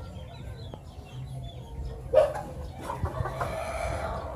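A bird calling: a sudden loud call about two seconds in, then a longer drawn-out call near the end, with small birds chirping faintly before it.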